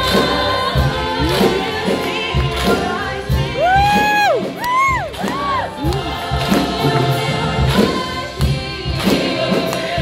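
Gospel-style choir singing with a solo voice on a microphone out front, over a steady rhythmic beat. Around the middle the soloist sings a run of long, swooping high notes.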